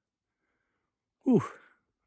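A person's short "ooh", falling in pitch, about a second in, with near silence before it.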